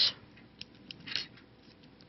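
Small scissors snipping through yarn: a few quiet, short snips, the loudest just over a second in.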